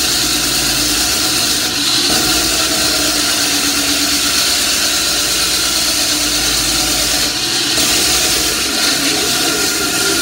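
Large diamond-blade concrete saw cutting into a concrete floor, running loud and steady.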